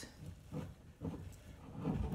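A spatula stirring and lifting a thick, sticky oat-and-nut-butter mixture in a glass mixing bowl: soft, irregular scraping and squelching strokes.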